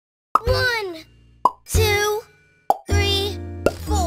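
Four cartoon pop sound effects about a second apart, each followed by a short child's voice over a low musical note, in a count-to-four sequence of popping balloons.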